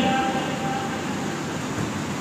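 Steady, even background noise during a pause in speech, with no distinct events.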